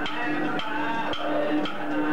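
Aboriginal song performed live: a singing voice over a sustained droning tone, kept in time by wooden clapsticks knocking steadily about twice a second.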